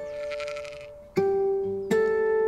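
Fingerstyle acoustic guitar notes ringing on, with a sheep bleating once over them for about the first second. New notes are plucked about a second in and again near the end.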